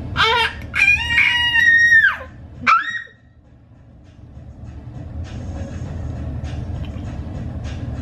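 Baby's high-pitched squeals, a held squeal that falls away and then a short sharp rising-and-falling squeak, all in the first three seconds; then only a low steady hum.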